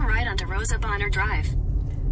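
Steady low road and engine rumble heard from inside a moving car, with a woman talking over it for the first second and a half.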